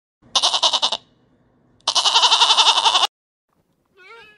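Goat kid bleating twice, a short wavering bleat and then a longer one of about a second, each cutting off abruptly.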